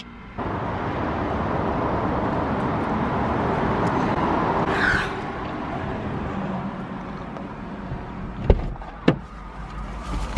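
Traffic going past, heard from inside a parked car, easing off about halfway through. Near the end come two sharp knocks as the car door is opened.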